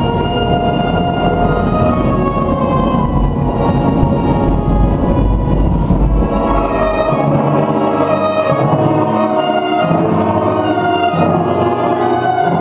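Concert wind band of clarinets, flutes, saxophones and brass, tubas included, playing held chords and moving lines. The deep bass notes drop out about seven seconds in.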